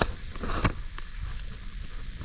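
Outdoor noise on a small boat on open water: a low rumble of wind on the microphone, with a brief wash of water about half a second in and a few faint knocks.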